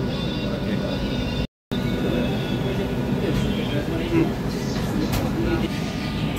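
Steady rumbling din of a busy restaurant kitchen, with indistinct voices in the background. The sound cuts out completely for a moment about a second and a half in.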